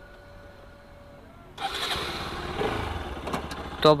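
Bajaj Pulsar RS 200's single-cylinder engine started about one and a half seconds in, then running steadily at idle.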